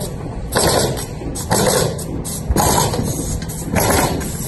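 Repeated blows on a plywood-sheathed wood-framed wall, about one a second, over a steady low rumble.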